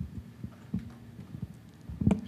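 Dull low thumps and bumps of a handheld microphone being handled as it is passed from one person to another, several soft knocks spread irregularly through two seconds.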